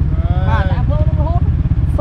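A man speaking in short phrases over a steady low rumble.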